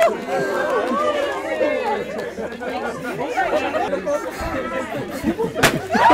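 A single sharp bang from a handheld confetti cannon going off near the end, over many people chattering at once.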